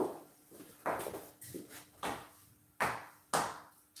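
Heeled shoes clicking on a ceramic tile floor: about five footsteps, roughly a second apart, each followed by a short echo, over a faint steady hum.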